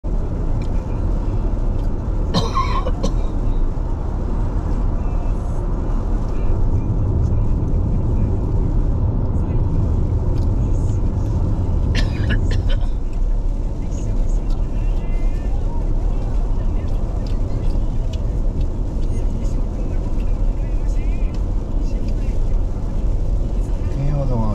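Steady in-cabin road noise of a car driving on a rain-wet road: a continuous low rumble of tyres and engine. Brief sharp sounds cut in about two and a half seconds in and again about twelve seconds in.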